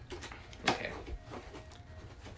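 Cardboard box being handled, with one sharp click about two-thirds of a second in and a quiet spoken "okay".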